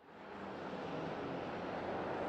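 Roadside ambience: a steady hiss of traffic passing on a wet road, fading up over the first half second.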